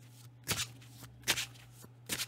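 A deck of divination cards being shuffled by hand: two short rasping riffles about a second apart.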